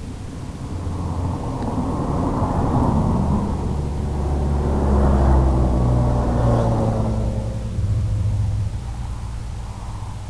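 Low rumble with a humming motor tone from a low-flying FPV quadcopter. It swells to a peak about five seconds in, the pitch gliding as the throttle changes, then fades.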